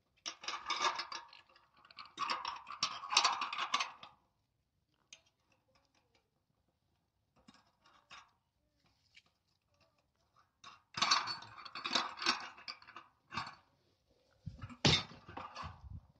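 Steel satellite-dish mounting bracket, U-bolt clamp and bolts clinking and rattling as they are handled and fitted onto the back of the dish. The clatter comes in two bouts, one at the start and one about eleven seconds in, with scattered light ticks between and a few heavier knocks near the end.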